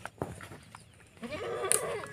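Totapuri goat bleating once, a single drawn-out call that starts a little over a second in.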